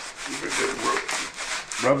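Hands rubbing blue painter's tape wrapped around a new paint roller cover, a steady scratchy rubbing that swells and fades in strokes. The tape is being pressed on to pick up loose lint from the new nap so the fibres don't end up in the paint.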